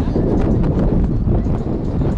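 Wind buffeting the camera's microphone in a heavy low rumble, with faint knocks of footsteps on sand.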